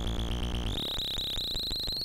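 Jolin Lab Tabør eurorack module, four oscillators cross-modulating each other, sounding a gritty drone: a low hum under a fast crackling texture, topped by a high whistling tone that steps up slightly in pitch a little under a second in.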